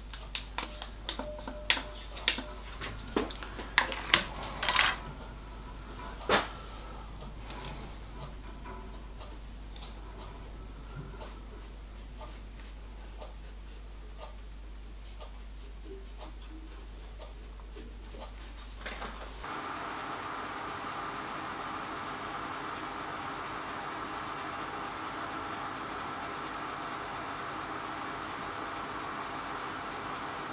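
A small metalworking lathe starts up abruptly about two-thirds of the way in and runs steadily with a motor hum, turning a steel spindle while it is lapped by hand with 3 micron lapping paste. Before that, a flurry of sharp clicks and taps.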